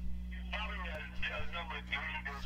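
Faint, thin-sounding speech from a loudspeaker, over a steady low hum.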